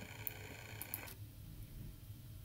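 Faint room tone: a low steady hum with a few faint clicks, the hum cutting off suddenly about a second in at an edit.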